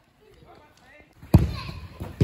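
A single sharp thud of a football being struck, about a second and a half in, ringing briefly in a large indoor hall, with faint distant children's voices before it.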